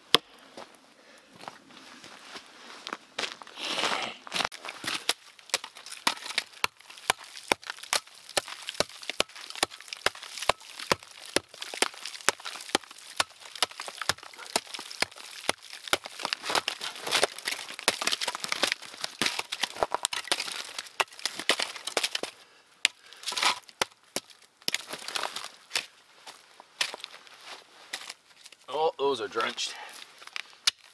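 Tomahawk chopping small pieces of kindling: quick, light, repeated strikes, about two to three a second, with the wood cracking and splintering.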